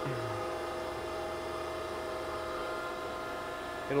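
Okamoto ACC-1224-DX surface grinder running: a steady electric hum made of several unchanging tones, with no knocks or strikes.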